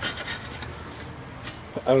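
Metal spatula scraping against a barbecue grill grate as bacon stuck to the grate is pried loose, a rough rasping scrape that begins with a click.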